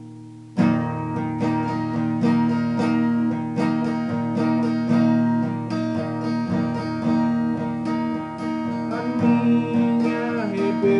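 Acoustic guitar strummed: a held chord dies away, then about half a second in the strumming comes back in with a sharp stroke and keeps a steady rhythm of chords.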